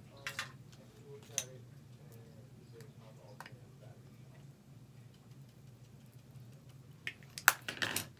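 Small hard clicks and light knocks of makeup containers and tools being handled, a few spaced apart and then a quick cluster of louder clicks near the end, over a low steady hum.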